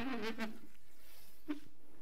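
A man's voice trailing off at the end of a word, followed by a pause of quiet room tone with a faint short sound about a second and a half in.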